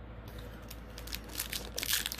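Foil wrapper of an Upper Deck hockey card pack crinkling as it is picked up and handled, the crackling getting denser and louder toward the end.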